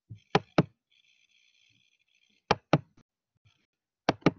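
Two pairs of sharp clicks, the clicks in each pair about a quarter second apart and the pairs about two seconds apart, with a few fainter ticks. A faint high whine sounds between the two pairs.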